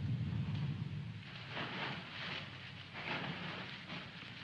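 Soft rustling of a scuffle, clothing and bodies shifting, over the steady hiss of an old optical film soundtrack, swelling a little twice.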